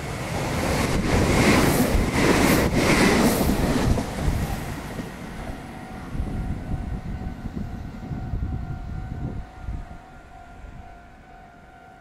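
Meitetsu 2000 series μSKY electric multiple unit running through a station at speed without stopping. A loud rush of wheels on rail, with sharp knocks over the rail joints, peaks in the first few seconds and then fades steadily as the train draws away.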